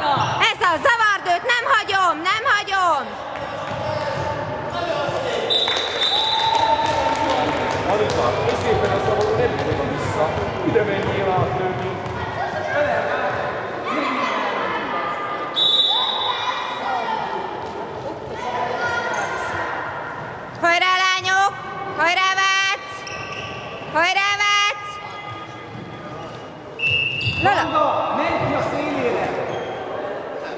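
A handball bouncing on a wooden sports-hall floor amid repeated shouting from players and spectators, echoing in the large hall. Short high referee whistle blasts sound about five seconds in, again at about fifteen seconds, and once more near the end.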